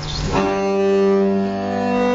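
Recorded Renaissance polyphonic chanson played by a consort of viols, starting suddenly about half a second in with several sustained bowed notes sounding together. A low steady hum runs before the music begins.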